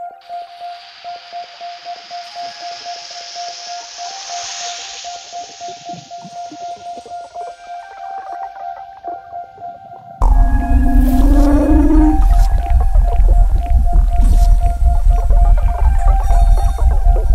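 Psydub electronic music opening with a rapidly pulsing synth tone under a hissing noise swell that rises and fades. About ten seconds in, a heavy bass and full beat come in suddenly and much louder.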